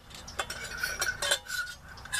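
Stainless steel percolator parts clinking: the coffee basket and stem knocking against the pot, a series of light metal clinks and taps, a few with a short ring.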